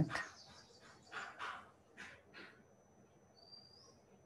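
Faint animal calls in the background: a few short calls in the first half, then a brief rising chirp near the end, over a faint steady high-pitched tone.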